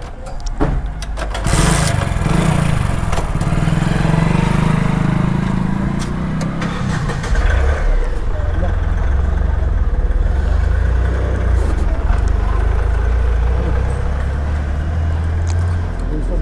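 Petrol pump dispensing fuel through a nozzle into a motorcycle's tank, with motor or engine sound. A wavering mid-pitched engine-like sound in the first half gives way to a steady deep hum from about seven seconds in.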